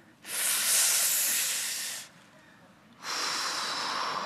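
A man mimicking a smoker into a close microphone: two long, breathy hisses, each about a second and a half, acting out deep drags on a cigarette and blowing the smoke out.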